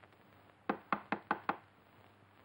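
Five quick, sharp knocks on a door in a rapid, even run lasting under a second.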